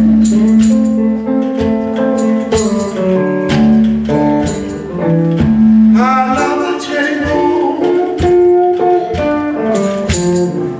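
Live blues: a man singing over a hollow-body electric guitar played through a small amp, with tambourine and drum strokes keeping the beat.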